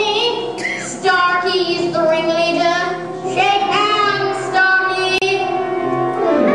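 Children singing a song on stage with instrumental accompaniment.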